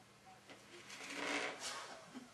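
Rapid scratching and scrabbling against an upturned plastic laundry basket: a cat underneath pawing at a lace toy. The rustle starts about half a second in, is loudest around the middle and eases off near the end.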